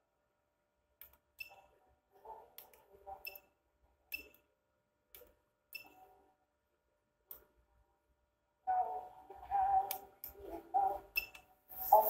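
Front-panel push buttons of an HDMI matrix switcher pressed one after another, each press a sharp click with a brief high ping, spread across the first eight seconds. From about nine seconds in, music plays from the switched source over a speaker.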